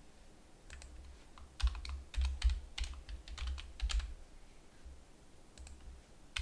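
Computer keyboard typing: a quick, uneven run of keystrokes, thickest between about one and a half and four seconds in, with a few single strokes before and after.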